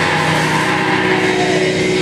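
Live extreme-metal band playing a loud, sustained wall of distorted electric guitar and bass.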